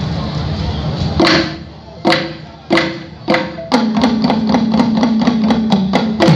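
Balafons and djembes starting up: a few single wooden-sounding notes spaced about half a second apart, then, from about four seconds in, fast playing with a held rolled note underneath. Crowd voices are heard before the first stroke.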